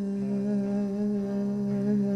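A man's voice holding one long sung note with a slight waver, over a steady low sustained tone.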